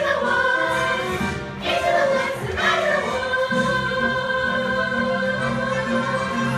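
Musical-theatre number: a cast of young voices singing together in chorus over instrumental accompaniment, holding long notes.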